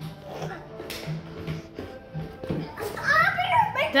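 Young children's voices in a kitchen. It is fairly quiet at first, then about three seconds in a child's high voice calls out, its pitch sweeping up and down.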